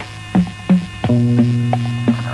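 Lo-fi electronic music: percussion hits that drop in pitch, about three a second. About a second in, a held low synth note comes in under them.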